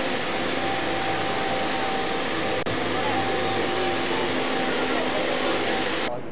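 Café interior ambience: a steady hiss and hum with indistinct voices in the background and a single faint click about two and a half seconds in.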